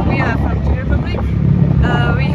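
Wind buffeting the microphone as a steady low rumble, with bits of speech early on and near the end.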